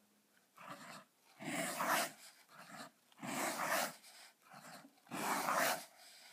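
Montblanc 234½ fountain pen with a left oblique nib scratching across paper in a series of separate strokes, about seven, each lasting from a third of a second to nearly a second, with short pauses between them.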